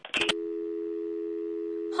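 A telephone line clicks as the caller hangs up, then a steady dial tone of two close pitches held evenly.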